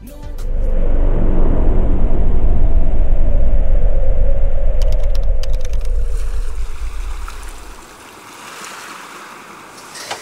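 Wind blowing over the microphone and the sea rushing past a sailboat under way in rough water, a loud, steady low rumble. It fades out about seven or eight seconds in, leaving a quieter hiss.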